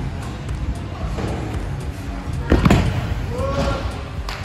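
Freestyle scooter on the concrete of an indoor skatepark bowl: one loud knock about two and a half seconds in, ringing in a reverberant hall over a steady low rumble, with a brief voice near the end.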